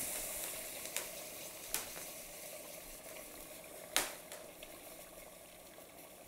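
Liquid nitrogen boiling off with a steady sizzling hiss around an aluminum tube immersed in it to chill it; the hiss slowly fades as the boiling subsides. A few light clicks, the sharpest about four seconds in.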